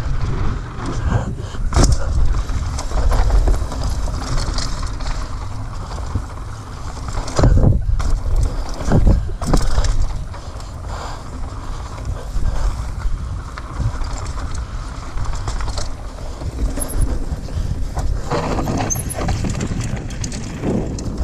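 Mountain bike descending a dirt forest trail, heard from a camera mounted on the rider: steady tyre and wind rush with the bike rattling, and several hard knocks as it hits bumps and roots, the heaviest around halfway.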